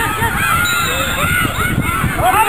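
Many voices shouting over each other in short, rising and falling calls, players and spectators calling out during open play, over wind rumble on the camcorder microphone.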